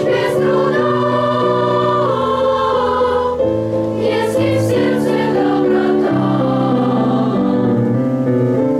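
Children's choir of boys and girls singing a song in sustained, held notes.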